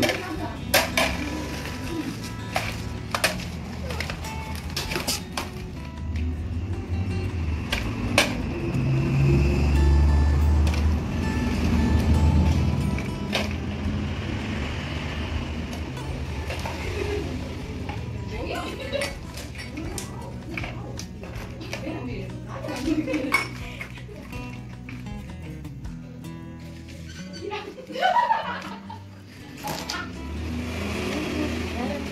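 Toy plates, cups and bowls clinking and clattering against each other and the tiled floor at irregular moments as a toddler gathers and stacks them, over background music.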